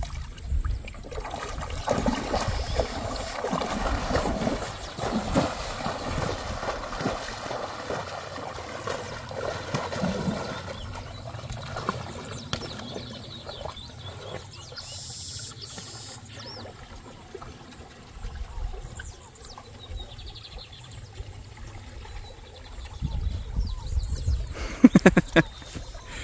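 Water sloshing and trickling around a horse as it wades into a farm pond and swims with a rider on its back. A short voice is heard near the end.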